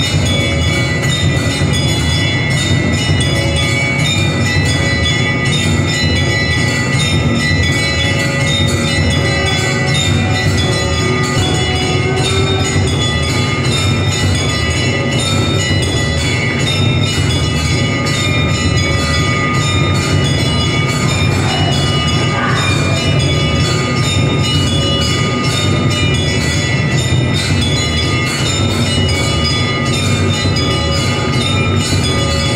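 Temple bells clanging rapidly and without a break for the evening aarti, many ringing tones overlapping, over a dense low pounding beat.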